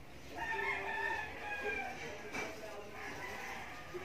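A rooster crowing once in the background: one long call of about two seconds.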